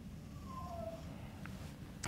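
Quiet room hum with two faint, short squeaks about half a second in and a faint tick later on.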